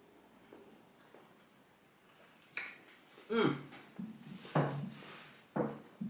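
A man eating a breaded chicken bite: faint chewing and mouth clicks, then a lip smack and three short muffled voice sounds in the second half, made with his mouth full.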